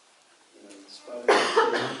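About a second of near silence, then a man's voice comes in suddenly and loudly, spoken close into a handheld microphone: an emphatic "Great".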